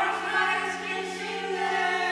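A group of voices singing one long held chord together, the notes steady without changing pitch.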